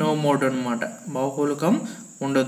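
A man's voice speaking, with a faint steady high-pitched whine behind it.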